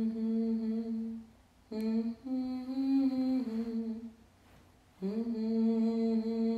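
A single voice humming a slow melody in long held notes, each phrase sliding up into its first note. The notes break off about a second and a half in and again around four seconds in, and the middle phrase steps up in pitch and then back down.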